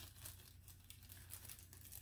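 Faint, intermittent crinkling of plastic packaging being handled, over a low steady hum.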